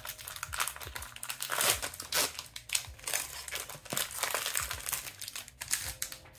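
Foil wrapper of an Upper Deck Series Two hockey card pack crinkling as it is handled and torn open by hand, in many short, irregular rustles.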